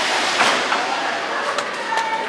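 Steady rush of air from a blower keeping a beach ball afloat, with voices faint in the background.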